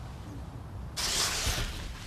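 Paper rustling as a photograph and a folder are handled: a hiss-like rustle that starts about a second in, after a quiet low rumble.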